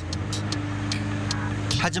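A steady low hum, with a faint high hiss and a few faint ticks.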